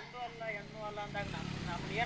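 A faint voice talking in the background.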